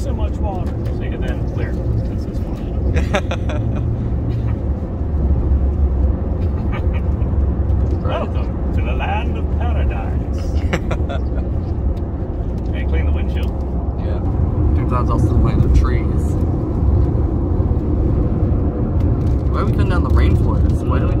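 Steady low road and tyre rumble inside a Toyota car's cabin at highway speed on wet pavement, with scattered short ticks and knocks through it.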